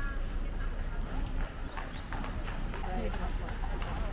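Horse hooves clip-clopping on cobblestones, a run of irregular knocks.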